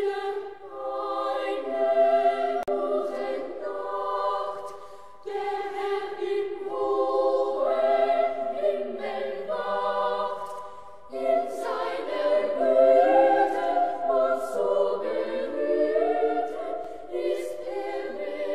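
A choir singing a slow song in several-part harmony, in long phrases that break off briefly about five seconds and about eleven seconds in.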